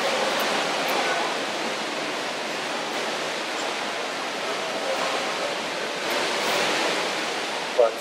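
A steady rushing noise, like flowing water, that holds an even level throughout.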